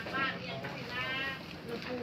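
Indistinct voices in a busy covered market, with a high, wavering voice sounding twice in the first second and a half.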